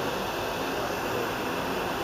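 Steady, even outdoor background hiss with no distinct events.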